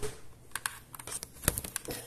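Irregular clicks and taps of handling noise as the recording camera is set in place and its cable brushed aside, with a louder knock about one and a half seconds in.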